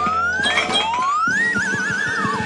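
Playful cartoon underscore: a whistle-like tone slides upward for about a second and a half, then breaks into a warbling trill, with light taps underneath.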